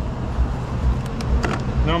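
Wind buffeting a microphone in irregular low gusts over a steady hum, with a few sharp clicks about a second in.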